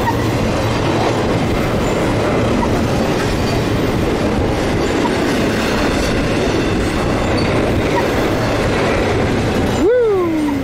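Double-stack intermodal freight train's loaded well cars rolling past close by: a loud, steady rumble and rattle of steel wheels on the rails. Near the very end a brief pitched tone falls away.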